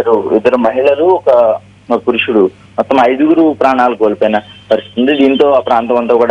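A reporter speaking over a telephone line, the voice thin and narrow like a phone call, with a steady low hum underneath.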